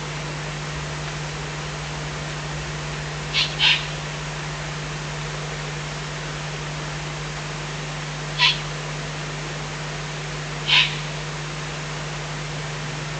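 Eurasian eagle-owl chicks giving short, hoarse hissing begging calls: a quick pair about three seconds in, then one each about eight and eleven seconds in. They sound over a steady low electrical hum and hiss from the webcam's microphone.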